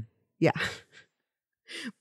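A woman's breathy, sighed "yeah" in conversation, with a short breathy sound near the end before talk resumes.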